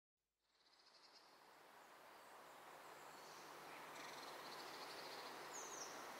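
Faint outdoor ambience fading in from silence: a soft hiss of open-air sound with a few high bird chirps, growing steadily louder.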